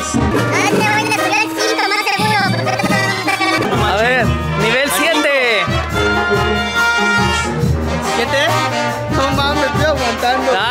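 Mexican banda music: brass horns playing over a steady low bass line.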